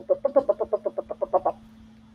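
A woman's voice rattling off a rapid string of nonsense syllables, about ten a second, for about a second and a half, standing in for the rest of a student's typed story.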